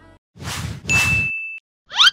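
Outro sound effects: two quick swishes, the second with a clear high ding that holds for a moment, then a short upward swoosh near the end.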